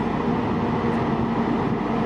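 Heavy diesel engine of a 70-ton rotator wrecker running steadily at working speed, driving the boom hydraulics while it lifts a forklift.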